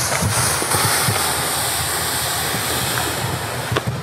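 Steady rush of whitewater rapids, with a short sharp knock near the end.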